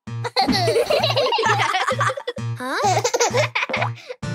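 Cartoon children's voices laughing and giggling over upbeat children's song music with a steady bass beat about three times a second.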